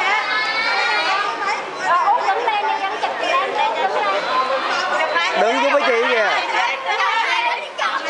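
Several people's voices chattering and talking over one another.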